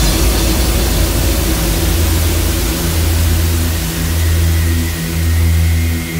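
Trance track in a breakdown: a wash of white noise slowly fading away over long held deep bass synth notes that change about once a second.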